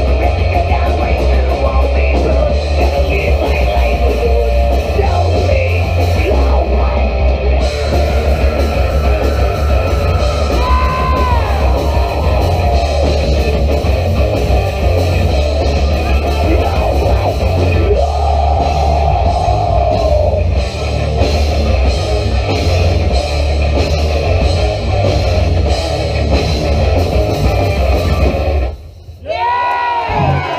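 Horror punk band playing live: loud distorted electric guitars, bass and drums. The music stops abruptly near the end as the song finishes.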